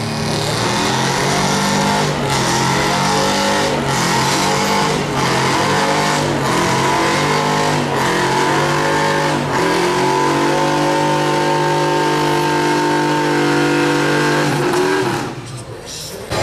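Stock gas Chevrolet Silverado pickup's engine held at high revs under heavy load, pulling a weight-transfer sled on dirt. The engine note dips briefly several times in the first ten seconds, then holds steady and falls away about a second before the end.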